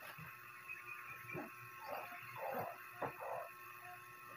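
A puppy whimpering a few short, soft times, over faint rustling of a backpack being handled and packed.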